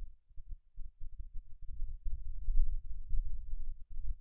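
A low, uneven rumble with no voice, rising and falling irregularly, the kind of noise a microphone picks up from handling, breath or desk movement.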